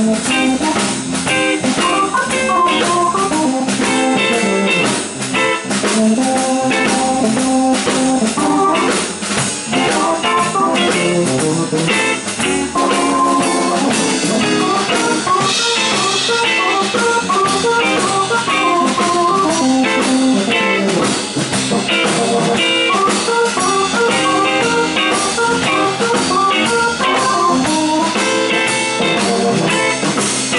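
Live blues band playing, with a Telecaster-style electric guitar out front over a drum kit.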